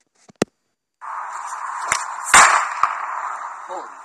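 Homemade matchbox firecracker going off: the packed match heads catch together in a sudden rushing hiss that lasts nearly three seconds, with a loud crack in the middle. Afterwards someone calls it loud enough to ask whether it was heard.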